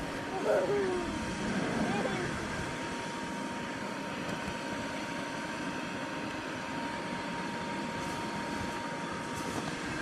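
Electric blower of an inflatable bounce house running with a steady whir and a thin, even whine. A child's voice is heard faintly in the first couple of seconds.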